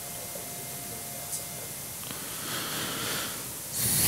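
Steady background hiss of a quiet studio room, with a soft breath-like rush of noise a little past halfway; speech begins right at the end.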